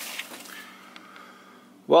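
Faint, brief rustle of a clear plastic parts bag being handled, followed by low room tone with a couple of tiny ticks.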